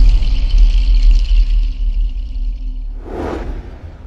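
Cinematic logo-reveal sting: a deep, sustained bass rumble under a high shimmering tail, slowly fading out, with a short whoosh about three seconds in.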